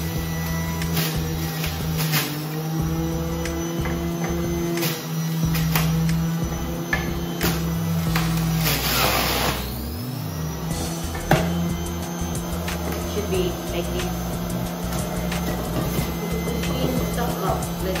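Electric centrifugal juicer running with a steady motor hum while apple and pear pieces are pressed down the feed chute. About halfway through the pitch sags and then climbs back as the motor bogs under the fruit, with scattered clicks and knocks of fruit and plastic.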